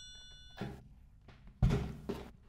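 A chime fades out, then there are two dull thunks about a second apart, the second louder, as the TC-Helicon VoiceLive Play unit is set back down on a wooden desk.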